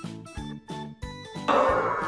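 Background music of plucked notes on a steady beat, about three notes a second. About one and a half seconds in, it gives way suddenly to louder room noise with voices.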